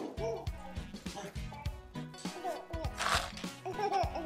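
Background music with a steady beat, with a few short high voice sounds over it.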